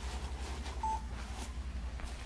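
A single short electronic beep about a second in, over a steady low hum and soft rustling.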